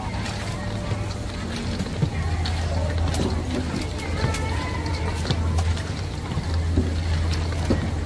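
Ladle clinking and scraping against a steel mixing bowl as fried chicken pieces are tossed in sauce, in short irregular clicks. Underneath are a steady low hum and background crowd chatter.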